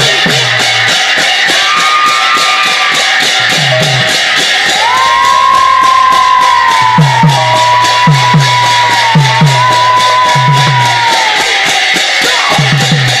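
Mridanga and large brass hand cymbals playing a fast instrumental interlude. The cymbals clash in a steady quick rhythm over deep drum strokes that bend down in pitch. A long high held note sounds over them in the second half.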